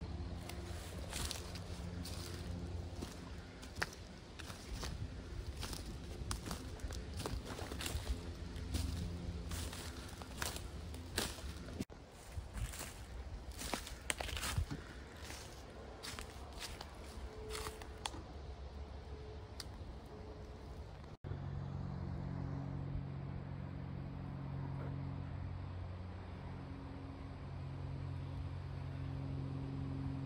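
Footsteps crunching through dry leaf litter and twigs on a forest floor, an irregular crackle of snapping and rustling for about twenty seconds. After that it gives way to a steady low droning hum.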